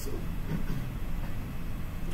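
Steady low rumble of room background noise, with a faint short murmur about half a second in.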